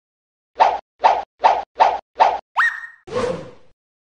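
Cartoon sound effects: five quick plops about 0.4 seconds apart, then a short upward-sweeping whistle that holds a high note, and a last, longer noisy hit that fades out.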